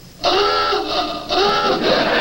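Alarm horn blaring in two long blasts, each about a second, with several steady tones sounding together over a hiss: a warning signal.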